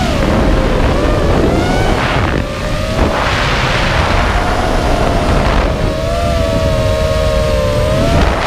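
QAV210 racing quadcopter's 2633kv brushless motors and 5050 propellers whining as it flies fast and low, heard through the GoPro mounted on the quad. The pitch drops at the start, then holds fairly steady, with the motors' tones sitting slightly apart and wavering with throttle, over wind noise.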